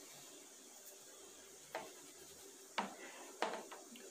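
Faint rubbing of a fingertip through a layer of cornmeal in a plastic tray, with four soft short taps in the second half.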